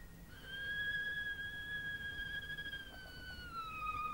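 Solo violin playing a Burmese song tune, holding one long high note that slides slowly downward near the end.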